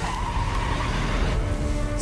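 Car engine running steadily under background music from a TV episode's soundtrack.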